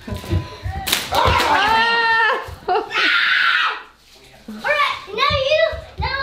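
A young child shrieking and squealing in rough play, with a sharp smack about a second in and voice sounds again near the end.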